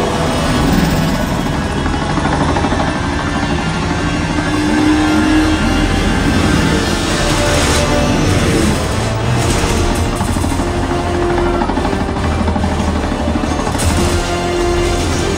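Film soundtrack played loudly through a 7.2.4 Atmos home theater system and heard in the room: music mixed with helicopter and vehicle action sounds, with strong deep bass from the subwoofers.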